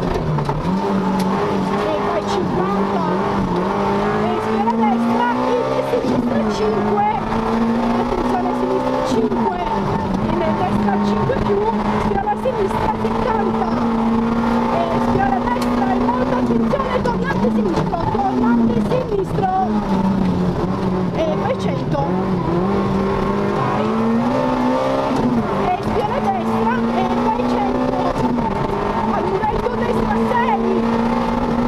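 Peugeot 106 Group N rally car's four-cylinder engine heard from inside the cabin, driven hard at high revs. The revs dip and climb again several times, around 6, 16 and 25 seconds in.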